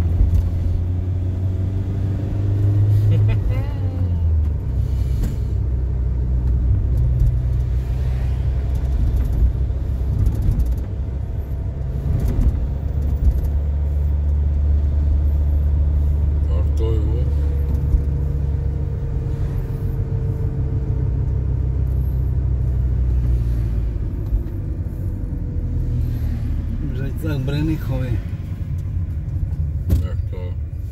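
Car engine and road rumble heard from inside the cabin while driving through town, a steady low drone that gets a little lighter in the last few seconds as the car slows behind traffic. A few short snatches of voice come through now and then.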